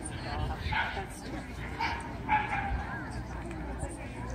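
A dog giving a few short, high barks over the chatter of a crowd.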